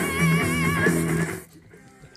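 Loud music played through a Pioneer SX-3700 stereo receiver and bookshelf speakers, with a held, wavering note over it. About one and a half seconds in the music cuts off abruptly as the receiver is switched off, leaving faint room tone.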